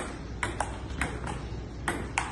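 Table tennis rally: the ball clicks sharply about six times in an uneven rhythm as it bounces on the JOOLA table and is struck back and forth by the paddles.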